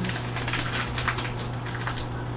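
Plastic seasoning packet crinkling in the hands in a few short crackles, over a steady low hum.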